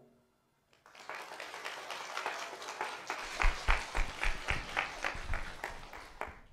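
Audience applauding, starting about a second in and building, with louder, sharper claps standing out over the second half.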